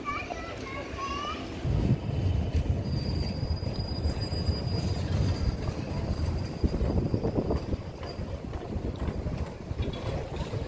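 Modern articulated low-floor street tram passing close by on its rails: a low rumble begins about two seconds in and runs on, with a thin, steady high squeal over it for several seconds in the middle.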